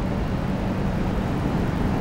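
Steady background rumble with a low, even hum running underneath it.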